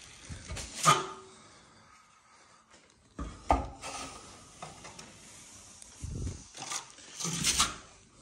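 A 14-inch trowel scraping across the wall in several passes, spreading and smoothing a skim coat of joint compound over textured drywall.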